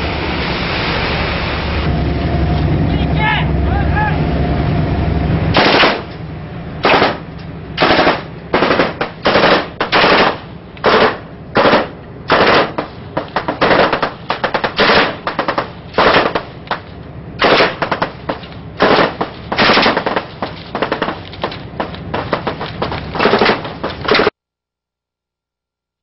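Automatic gunfire in rapid short bursts, roughly two a second, starting about six seconds in, recorded aboard a coast guard patrol vessel as it comes under fire from a spy ship. Before the shooting, a steady loud rumble of boat and sea.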